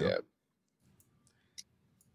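A short spoken "yeah", then a few faint, sparse clicks of computer keys.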